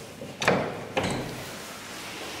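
Old HVILAN elevator's door worked by hand: a sharp clunk about half a second in, then a second knock half a second later, each fading away.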